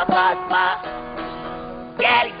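A male folk singer finishes a sung phrase over a bağlama (saz), then the saz's strummed chord rings on and fades away.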